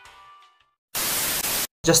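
Background music fading out, then after a brief silence a short burst of television-static hiss that lasts under a second and cuts off suddenly, used as an editing transition.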